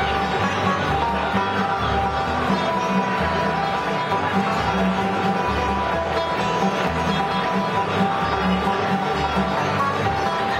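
Live acoustic bluegrass band playing, with plucked guitars over an upright bass keeping a steady beat.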